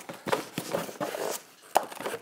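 Cardboard kit box and its loose parts being handled: irregular rustling and scraping with a few knocks, and a sharp click near the end.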